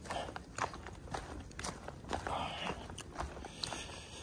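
A hiker's footsteps on a dry, leaf-littered dirt and rock trail, short crackly steps at about two a second.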